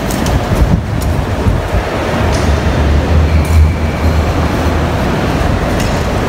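Loaded airport luggage trolley rolling across the terminal floor: a steady low rumble of its wheels.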